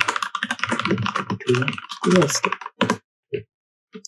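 Fast typing on a computer keyboard for nearly three seconds, then two single key presses near the end.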